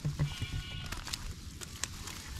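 A short, high animal call lasting about half a second, just after a couple of low thumps.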